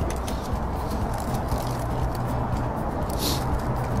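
Steady background noise with a low steady hum, and a short hiss about three seconds in.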